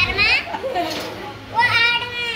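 Children's voices: a very high-pitched rising cry at the start and another, longer one near the end, with quieter talk in between.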